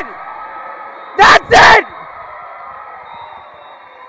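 A sports announcer yelling in celebration: two loud, clipped shouts about a second in, over steady crowd noise in a gym that fades toward the end.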